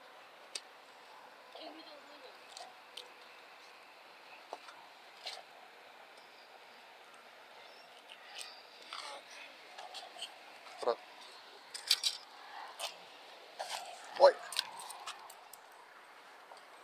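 Scattered small clicks and rustles of hands handling fishing gear and a plastic bait bag over a faint steady background, with a few short, indistinct voice sounds in the second half.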